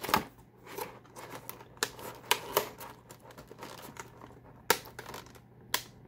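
Clear plastic blister packaging and a cardboard box being handled: irregular clicks and crinkles, with a few sharper snaps, two of them near the end.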